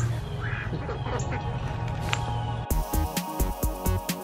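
Outdoor background with a low steady hum and a few bird calls, then, about two-thirds of the way through, electronic background music with a fast steady beat cuts in.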